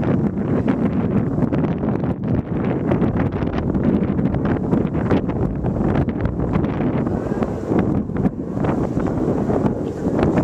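Wind buffeting the microphone: a loud, steady rumble that gusts throughout.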